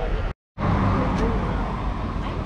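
Roadside traffic noise with a car driving past near the end. The sound cuts out completely for a moment about a third of a second in, then returns.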